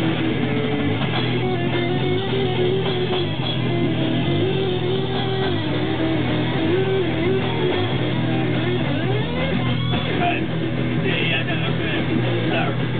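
Live metal band playing: distorted electric guitars, electric bass and drums, with a guitar line that bends up and down.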